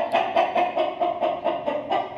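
Aseel chicken clucking in a fast, steady run of about seven clucks a second.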